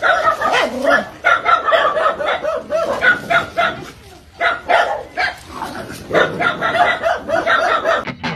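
Dogs barking rapidly and continuously at a macaque, the barks coming several a second with a short lull about halfway through.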